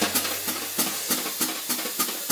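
Wire brushes on a snare drum playing a fast jazz swing pattern, about five strokes a second over a steady swish from the brushes.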